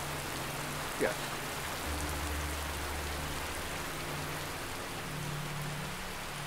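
Heavy rain pouring down steadily, an even hiss of falling water. A low steady hum sits beneath it for a couple of seconds in the middle.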